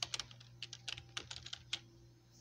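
Computer keyboard keys clicking faintly as a word is typed: a quick, uneven run of about a dozen key presses that stops just before the end.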